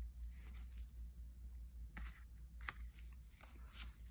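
Faint handling of a stack of Magic: The Gathering cards being flipped through one by one in the hand, with a few light ticks as the cards slide over each other, over a low steady hum.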